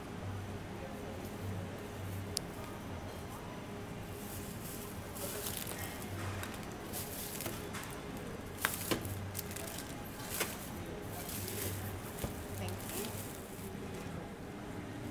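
Thin plastic carrier bag rustling and crinkling in repeated bursts as groceries are packed into it, with a few sharp clicks and knocks of items being handled, over a low steady background hum.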